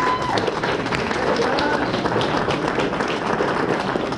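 Audience applauding a named award winner: a steady patter of many hands clapping.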